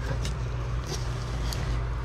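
A steady low machine hum, with a few faint rustles and ticks as cardboard box flaps are pulled open by hand.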